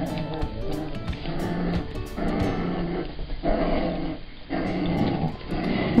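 Dogs growling in play as they tug at a toy, in several short bouts, with music playing underneath.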